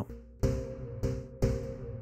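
Sonic Projects OP-X PRO II software synthesizer playing a single-note arpeggio: pitched notes with sharp attacks, about two a second, each fading before the next.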